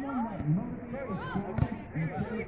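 Overlapping voices of players and sideline spectators calling out across a soccer field, none of it clear speech. There is a single short thud about a second and a half in.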